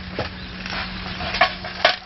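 A Korean vegetable pancake (jeon) sizzling in a frying pan, a steady frying hiss with a few sharp clicks of the pan being handled, over a steady low hum.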